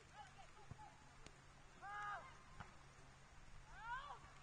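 Faint, distant shouts on a soccer field: one short call about halfway through and another rising call near the end, over otherwise near silence.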